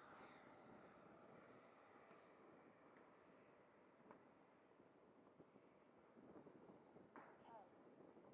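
Near silence: faint outdoor ambience, with a few short, faint chirps near the end.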